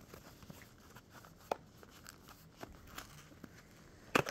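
Faint, scattered clicks and rustling of a cardboard product box being worked open by hand, with one sharper click about a second and a half in.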